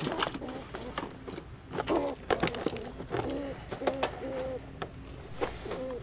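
Wire cage traps clinking and rattling as a trap door is opened and the traps are handled. A dove coos a short run of low notes in the background from about two to four seconds in.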